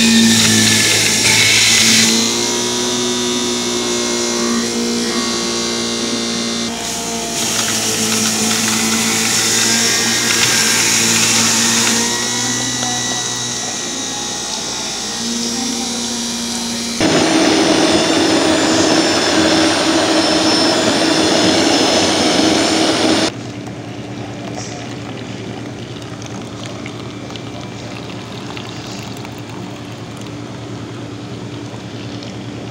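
Countertop blender motor running at speed, chopping greens and ice into juice. Its tone shifts a few times and it grows louder and harsher about 17 s in, then drops abruptly about 23 s in to a quieter steady hum.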